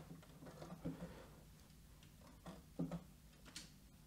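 Faint, scattered soft knocks of MIDI keyboard controller keys being played, a handful of light taps over a few seconds against near silence.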